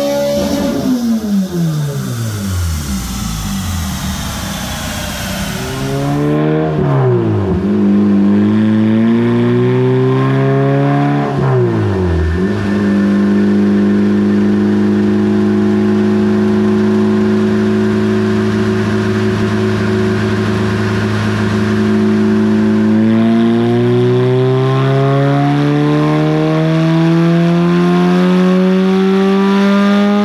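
Toyota 2ZZ-GE inline-four in an MR2 Spyder running on a chassis dyno during tuning. The engine winds down from high revs, is blipped up and back down twice, then holds a steady speed for about ten seconds before climbing slowly in revs near the end.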